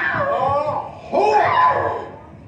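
Human voices wailing in long, wavering cries rather than words, in two stretches with a short break about halfway.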